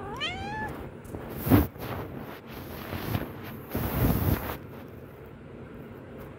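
A cat gives one short meow that rises in pitch, right at the microphone. About a second and a half in there is a loud brushing bump, and around four seconds in a longer rustling noise, close to the microphone.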